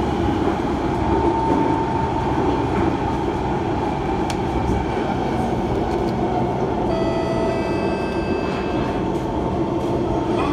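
Interior sound of a C151 MRT train running between stations: a steady rumble of wheels on track and running gear, heard from inside the carriage. About seven seconds in, a brief whine of several steady tones sounds for roughly two seconds over the rumble.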